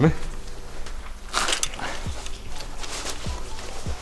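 Background music with a low steady hum, and a short scraping rustle about a second and a half in as the metal housing of an old military three-phase plug is unscrewed by gloved hands.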